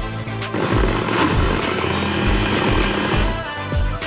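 Electric mixer grinder motor running: a loud whirring noise starts about half a second in and cuts off after about three seconds. Pop music with a steady beat plays underneath.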